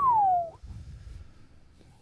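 A single whistled note that slides down in pitch over about half a second, then faint room tone.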